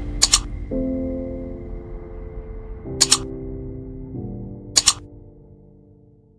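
Background music of sustained chords, changing every second or two and fading out toward the end, with three sharp double mouse-click sound effects from an on-screen subscribe-button animation: one just after the start, one about three seconds in and one near five seconds.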